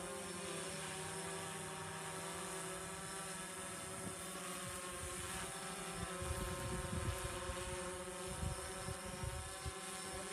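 Steady, even drone of a distant engine, made of several held tones. From about six seconds in, irregular low buffeting on the microphone.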